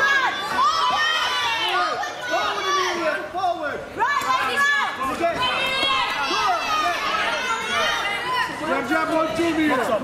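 Spectators in a hall shouting and cheering, many voices overlapping with no single clear speaker.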